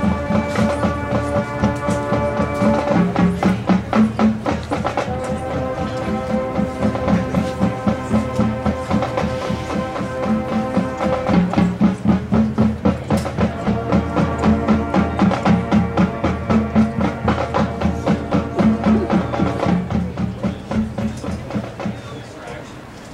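High school marching band warming up: held chords that change pitch every several seconds over quick, steady percussion strikes, stopping just before the end.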